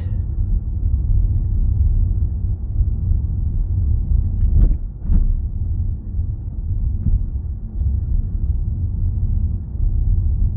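Steady low rumble of a car being driven, engine and road noise heard inside the cabin, with two brief knocks about half a second apart near the middle.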